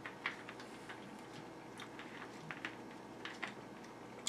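Faint, irregular small clicks from a plastic screw cap being turned off a root beer bottle.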